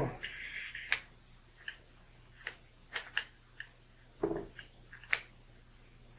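Small parts being handled and fitted onto the steel rod of a Star Lube-Sizer air pressure assembly: a brief rustle at the start, then scattered light clicks as the knurled knob and washers go on.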